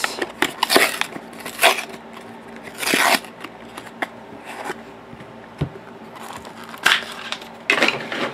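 Small cardboard trading card box being opened and handled: several short rustling, scraping bursts as the flaps are worked and the stack of cards in its paper wrap slides out, with a light click in the middle.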